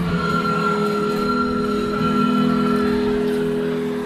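Recorder ensemble playing, several instruments holding long steady notes together.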